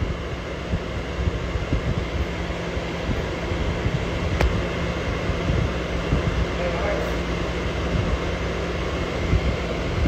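Steady noise inside a car cabin: an even rushing hiss over a low rumble and a faint steady hum, from the engine and the air-conditioning fan running.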